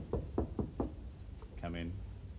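Knocking on a panelled wooden door: five quick raps in under a second.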